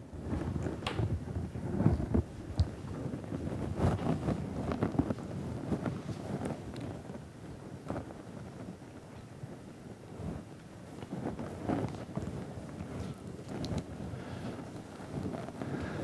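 Quiet room sound with scattered soft rustles and knocks of handling noise, with no speech.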